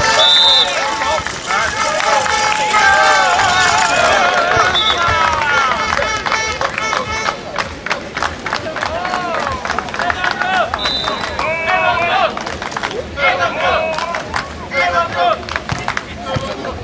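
Beach volleyball spectators: many voices shouting and talking at once, with rapid clapping through the middle and a few short high whistle blasts.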